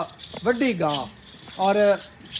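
Small bells on a walking cow's ankle bands jingling, with a voice in two short rising-and-falling phrases over it.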